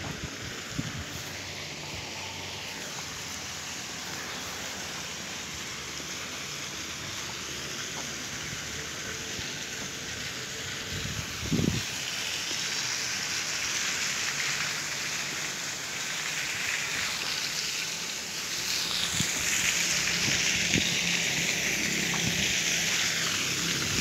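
Water fountain jets splashing into their basin: a steady hiss of falling water that grows louder over the second half. A single thump comes about halfway through.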